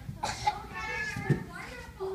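Young children's voices chattering and calling out, with a couple of short knocks, the louder one a little past halfway.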